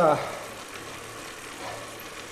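Trek Speed Concept 9.9 bike on an indoor trainer, whirring steadily under hard pedalling: an even hiss with a faint low hum.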